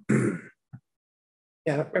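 A person clears their throat once, briefly, lasting about half a second, followed by silence.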